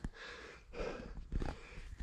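A cyclist breathing hard close to a clip-on lapel microphone, out of breath after a climb: soft breathing with two short, louder breaths.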